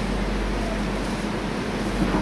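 Steady hiss of room noise with a constant low hum underneath and no speech.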